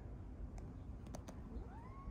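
A cat meowing: one call that rises in pitch and then holds, starting near the end, after a few faint clicks.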